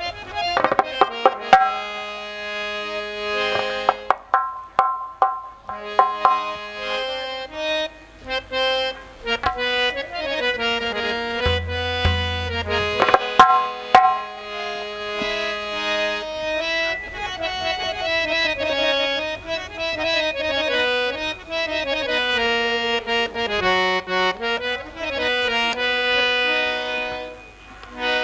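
Harmonium playing the melodic introduction to a Hindi tribute song (shraddhanjali geet), its reeds sounding a steady, flowing tune. Occasional sharp hand-drum strokes come in, more of them in the first half.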